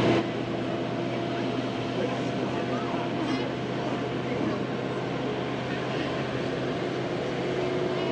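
Steady hum and road noise of a moving open-air tour tram.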